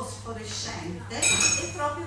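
A brief, bright ringing clink of tableware a little over a second in, the loudest sound here, over a woman talking into a microphone.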